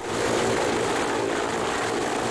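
Loud, steady rotor and turbine noise of an Mi-8-family twin-turbine helicopter hovering low as it comes in to land.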